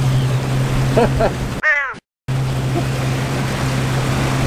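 A boat's outboard motor running steadily with the boat underway, with wind and water rushing over it. A short word is spoken about a second in; a little after that comes a brief falling tone, then all sound drops out completely for a moment before the motor and wind return.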